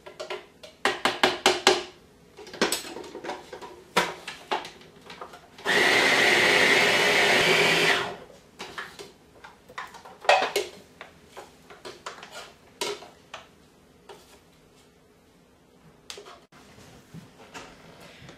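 Small countertop food processor running once for about two seconds, about six seconds in, blending soaked sunflower seeds, dates and raisins into a sticky pie-crust mixture. Scattered light clicks and knocks come before and after it, a quick run of them near the start.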